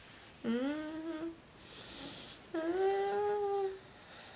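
A voice humming two drawn-out tones, the first sliding upward and the second held level, each about a second long, with a short breathy hiss between them.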